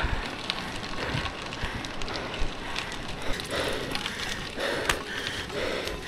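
Road bike tyres rolling over loose gravel, a steady crackling crunch with many small clicks, under low wind rumble on the microphone.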